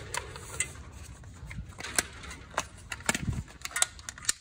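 Black plastic air-filter cap being handled and pushed back onto the air filter housing, a series of light clicks and knocks that come more thickly in the last second.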